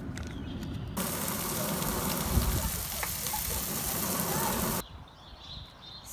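Chicken in a marinade sizzling on a grill: a steady, even sizzle that starts about a second in and cuts off abruptly about five seconds in.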